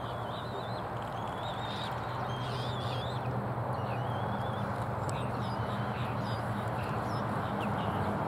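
Short, wavering high-pitched bird calls, repeated many times, over a steady low rumble and hum that slowly grows louder.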